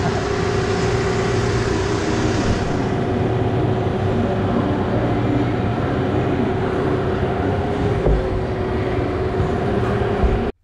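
A steady mechanical drone with a constant hum and a low rumble underneath, from machinery running in an indoor arena; its hiss thins a little about three seconds in.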